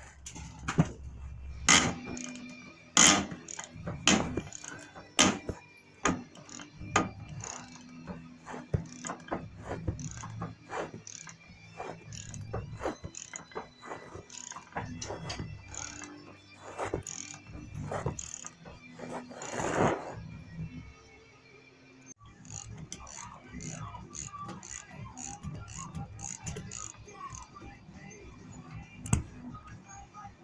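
Socket wrench on a long extension working tight U-joint strap bolts loose at a driveshaft yoke. It makes irregular ratchet clicks and metal knocks for about twenty seconds, then eases off.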